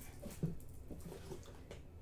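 Quiet handling of a cotton T-shirt as it is laid flat and smoothed by hand: soft fabric rustle with a few faint ticks about half a second in.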